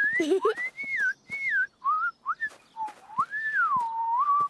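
A person whistling with the lips, a wandering tune in short phrases that glide up and down, with a longer swooping phrase near the end.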